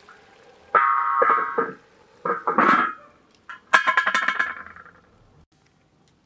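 A metal ladle scraping across a large metal cooking pan: three squealing, ringing scrapes of about a second each, the last one with a rapid chatter.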